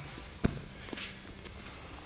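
A single thump on a foam mat about half a second in, then soft shuffling of bodies and bare feet on the mat.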